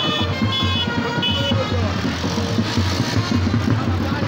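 Music with a pulsing bass and short held high notes during the first second and a half, mixed with the noise of a slow-moving car.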